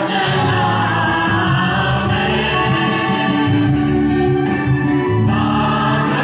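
A choir singing a liturgical hymn in long held notes, with no break.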